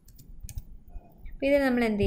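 Computer keyboard typing, a few scattered key clicks. Near the end a voice holds one drawn-out syllable with a slightly falling pitch, the loudest sound here.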